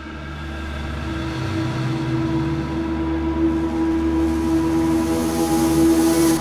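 A steady droning hum with several held tones, slowly growing louder.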